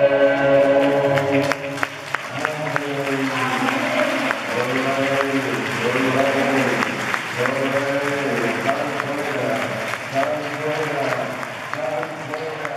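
A congregation's singing holds a last chord that ends about a second and a half in, then gives way to applause from the crowd with a voice calling out in short phrases over it.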